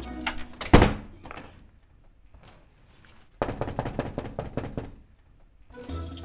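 A front door is shut with a single heavy thunk about a second in. After a quiet pause comes a quick run of light taps lasting under two seconds.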